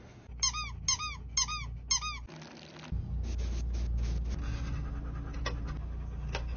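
Four short, high squeaks, each rising and falling in pitch, about half a second apart. They are followed by a steady low hum with a few faint clicks.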